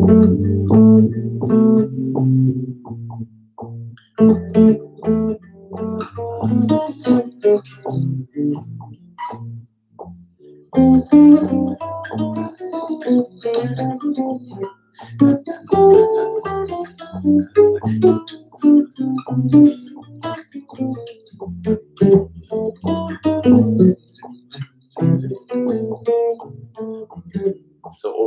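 Solo electric bass improvising a line of separate plucked notes, built on B major 7 arpeggios played against a G7 chord, moving in and out of the key so that it sounds a little crunchy. There are short breaks about 4 and 10 seconds in.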